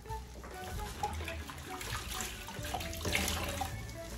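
Water running from a kitchen tap into a stainless steel sink, coming and going and loudest a little after three seconds in, over soft background music.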